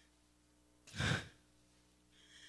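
A single audible breath from a young woman into a close microphone, about half a second long and about a second in, over a faint steady hum.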